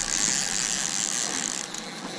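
Fishing reel's drag buzzing steadily as a hooked fish, which the anglers believe is a kingfish, pulls line off light tackle. The buzz breaks off briefly shortly before the end.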